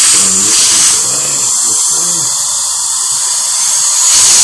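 Dentist's high-speed drill whining steadily as it cuts a tooth, a little softer from about a second in. A voice sounds briefly over it in the first two seconds.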